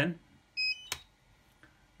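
A DJI drone remote controller (RC transmitter) giving a short electronic beep as it is switched back on, followed by a sharp click a moment later.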